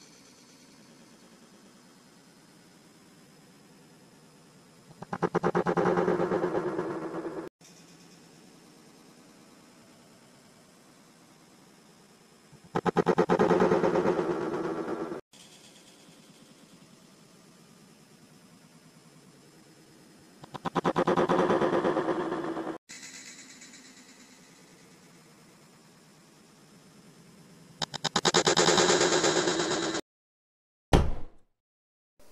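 Slowed-down, drawn-out and distorted sound of a dart throw landing in the dartboard, heard four times, each lasting two to three seconds, with a faint steady hum between.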